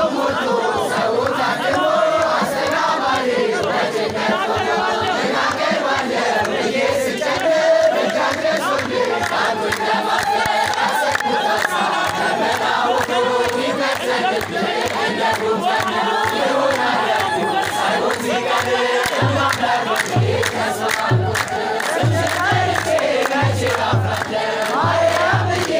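A crowd of men and women singing an Ethiopian Orthodox mezmur together, with hand clapping. Low, regular drum beats come in near the end.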